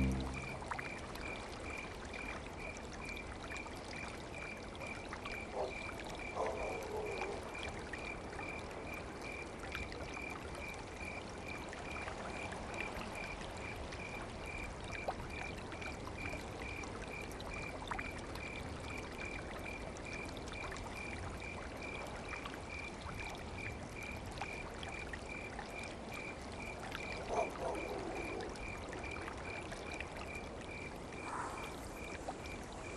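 Faint flowing water with a high chirp repeating steadily about twice a second. Two brief soft sounds come a few seconds in and near the end.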